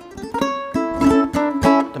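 Ukulele strummed in a short rhythmic chord pattern, several quick strokes over ringing chords. It is played near the bridge for a brighter, more metallic sound than strumming where the neck meets the body.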